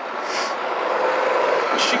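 Road traffic from a passing vehicle, a noisy rush that grows steadily louder, with a short hiss just after the start.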